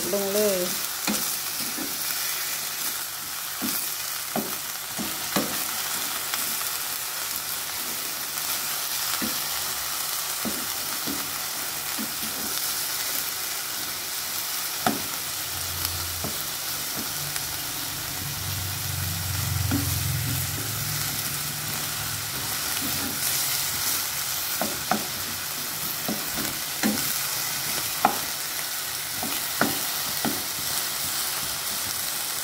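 Minced pork and baby corn sizzling steadily in a hot pan while a wooden spatula stirs and scrapes through them, with now and then a sharp knock of the spatula against the pan.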